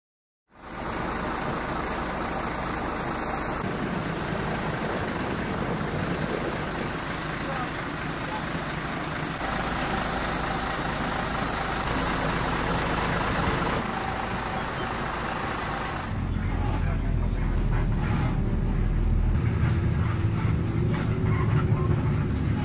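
Road-vehicle and traffic noise with indistinct voices, the background changing abruptly several times; a heavier low engine rumble comes in about two-thirds of the way through.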